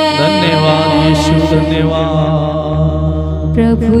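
Hindi Christian worship song being sung, with long held vocal lines over a sustained instrumental backing whose bass note changes twice.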